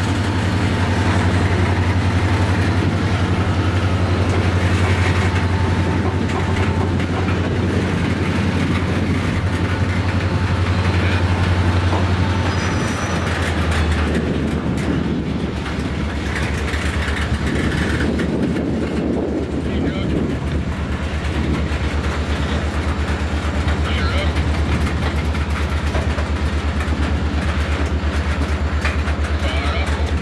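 Freight train boxcars rolling past, a steady low rumble of steel wheels on the rails that shifts lower in pitch about halfway through.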